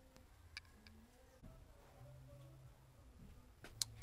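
Near silence: room tone with a few faint clicks, one about half a second in and a sharper one near the end.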